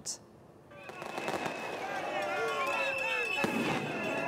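Street demonstration crowd shouting and cheering, rising about a second in, with scattered sharp bangs. A steady high tone is held over the crowd from about two seconds in.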